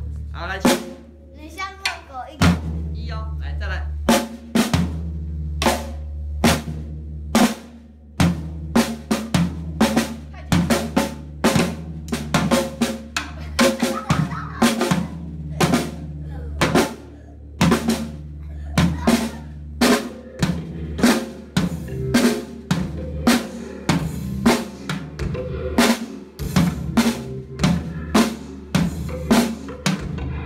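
A snare drum and a floor tom struck with wooden drumsticks by children, a steady run of strikes about two to three a second, with the low drum ringing on between hits.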